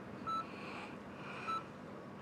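Hospital patient monitor beeping twice, short high beeps a little over a second apart, over faint room tone.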